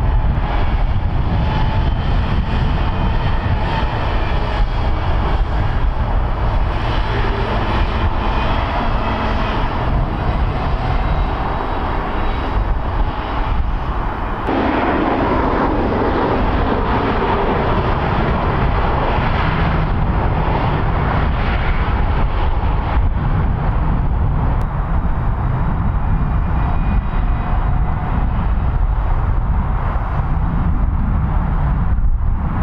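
A 6x6 airport crash tender's diesel engine running and its tyres on wet tarmac as it drives by. About halfway through, the sound changes abruptly to a steady, loud engine rumble at the airfield.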